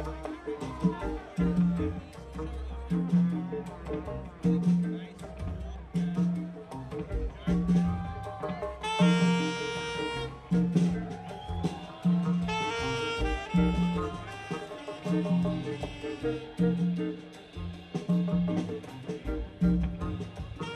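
A live afrobeat band plays a repeating bass line over congas and guitars, and the horn section of saxophones, trumpet and trombone comes in with two loud held phrases, about nine and twelve seconds in.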